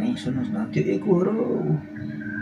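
A man's voice talking in a studio, over a steady low hum.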